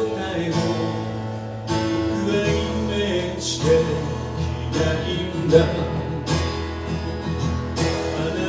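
Live acoustic ballad: a steel-string acoustic guitar strummed under a male voice singing, with a drum struck about once a second.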